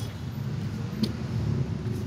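Low, steady rumble of road traffic in the background, with a faint click about a second in.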